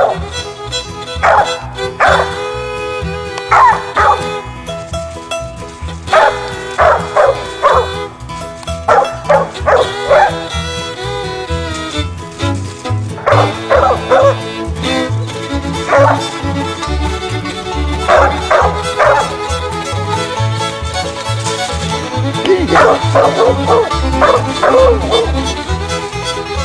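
Coon dog barking in bursts of several barks, with gaps of a few seconds, over background music.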